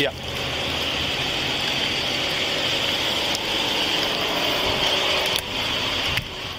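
Steady rushing noise on a police body-camera microphone outdoors, with a vehicle engine idling underneath; a single spoken 'yeah' at the very start.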